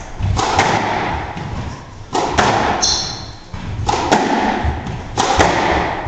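Squash rally: the ball smacking off rackets and the court walls about every one and a half seconds, each hit echoing around the court. A short high squeak about three seconds in, typical of a shoe on the wooden floor.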